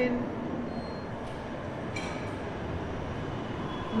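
Metro train running in the station, a steady rumble and hiss, with a brief high tone about two seconds in.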